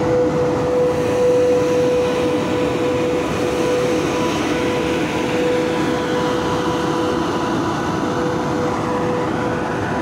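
Freight train pulling out behind a VL80k electric locomotive, its cars rolling steadily along the track with a continuous rumble. A steady hum holds one note throughout.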